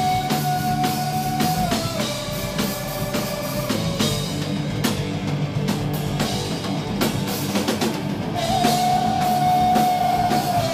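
Punk rock band playing live: electric guitar and a drum kit, with a held high note that slides down a step about two seconds in and comes back near the end.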